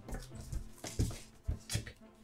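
Soft laughter: a few short, breathy chuckles from the players.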